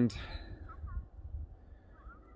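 A man's voice ending on a drawn-out word right at the start, then a low rumble of wind buffeting the phone's microphone.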